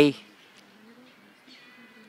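A man's word trailing off at the very start, then faint background bird calls with a dove cooing.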